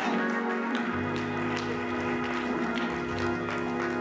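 Church music: a sustained chord held on a keyboard, with congregants clapping along about twice a second.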